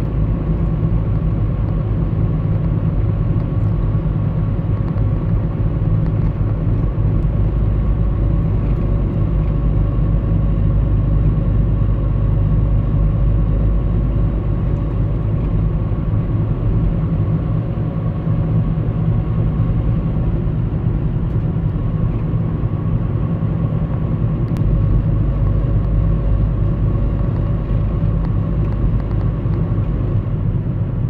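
A road vehicle driving at a steady speed, a continuous low rumble of engine, tyre and wind noise with a faint steady hum above it.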